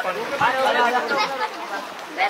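Several people talking at once, voices overlapping in a steady babble of speech.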